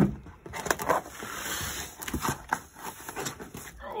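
A large taped cardboard box being handled and hauled up from the floor: rustling and scraping of cardboard with several knocks and bumps.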